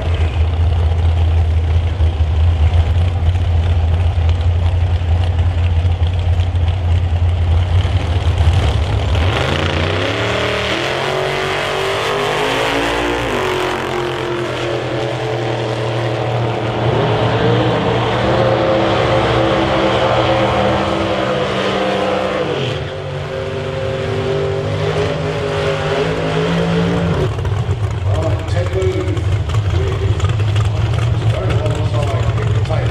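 Outlaw Anglia drag car's engine idling with a deep, steady note on the start line, then launching about nine seconds in and accelerating hard down the strip. Its pitch climbs, drops and climbs again several times until about 27 s.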